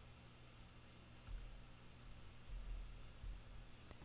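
A few faint, scattered computer keyboard keystrokes over a low steady hum.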